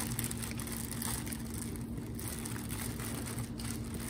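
Thin plastic C-arm bonnet rustling and crinkling faintly as hands work tubing through a hole in it, over a steady low room hum.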